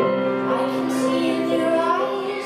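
A woman singing with piano accompaniment; her voice comes in right at the start over held piano chords.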